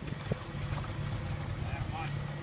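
A vehicle engine idling with a steady low hum.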